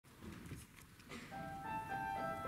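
Faint rustling and a few clicks, then music starting about a second in: high, held piano notes come in one after another and build.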